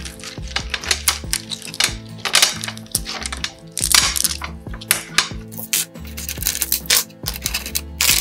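Small 10 mm thick marble mosaic tiles clicking and clinking against one another, with short scrapes as pieces are picked up, slid and set down one at a time, at an irregular pace. Background music with a steady bass line plays underneath.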